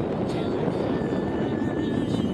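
Gusty wind buffeting the camera microphone: a steady rushing rumble, with a faint thin steady tone coming in about halfway through.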